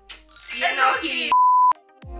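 A brief burst of voice, then a single steady high beep lasting under half a second that cuts off sharply: an edited-in bleep of the kind laid over a word to censor it.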